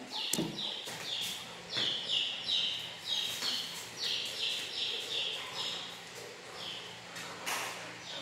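Baby chicks peeping: a run of short, slightly falling chirps, about three a second, that stops near the end, with a few sharp knocks among them.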